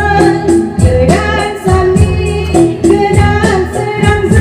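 A woman singing a Bodo-language gospel song into a handheld microphone, amplified through a PA, over backing music with a steady beat.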